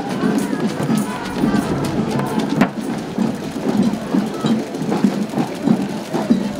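Street parade music with a steady drum beat, mixed with voices from the marchers and crowd.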